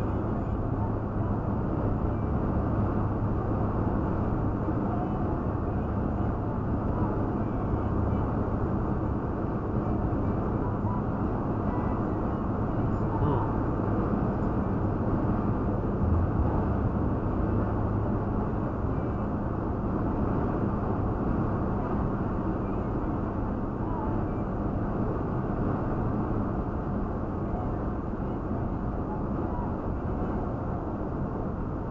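Steady road and engine noise inside a Toyota Tacoma pickup's cab while cruising on the highway: an even low rumble with a constant hum, unchanging throughout.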